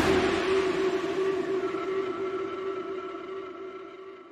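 Intro sound effect: a noisy glitch hit trailing off, leaving a steady ringing tone with a few fainter overtones that fades out gradually.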